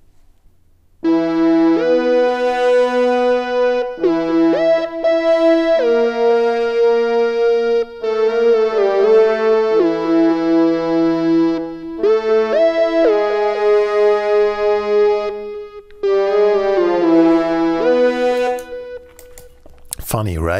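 A theremin-like synthesized flute lead, from the Retrologue 2 synthesizer, plays a melody with sliding glides between notes. Sampled orchestral horns double it an octave lower. The music starts about a second in and runs in four-second phrases with short breaks between them.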